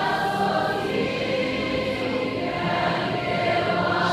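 A choir of many voices singing a hymn in long, steady held notes.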